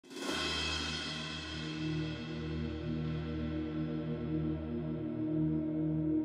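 Logo intro music: a hit at the very start whose bright ringing dies away over several seconds, over a low sustained chord held steady.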